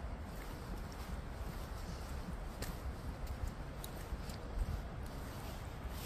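Footsteps of a person walking on paved paths: irregular light clicks over a steady low rumble.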